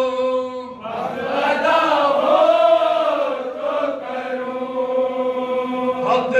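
Men's voices reciting an unaccompanied Urdu nauha (Shia mourning elegy): a long held note, a brief break just under a second in, then a new phrase that rises and falls in pitch.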